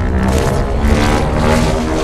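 Loud film-trailer soundtrack: held music chords over a heavy low rumble of monster-battle sound effects.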